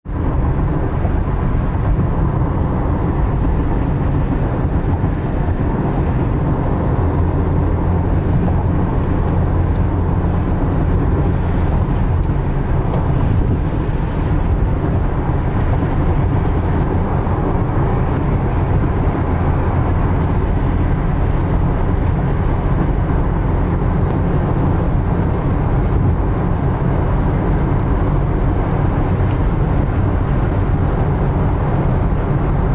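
Steady road noise inside a car cabin at freeway speed, tyres running on wet pavement, mostly a low rumble that holds even throughout.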